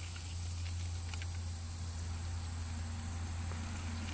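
Fingers picking at a dry, diseased cotton boll, giving a faint crackle or two, over a steady low rumble and a thin, steady high whine.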